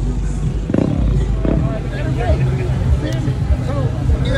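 People talking in the background over a steady low rumble, with a couple of brief knocks about a second in.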